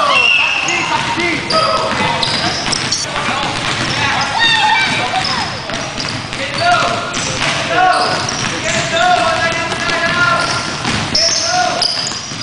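Pickup basketball on a hardwood gym floor: the ball bouncing repeatedly, sneakers squeaking in short high chirps, and players calling out, all echoing in the large gym.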